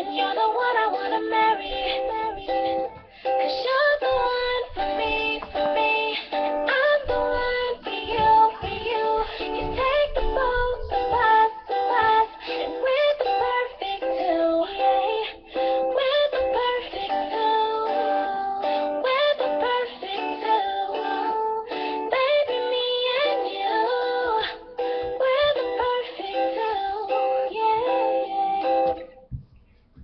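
Strummed guitar with a wordless sung melody over it, the music stopping abruptly about a second before the end.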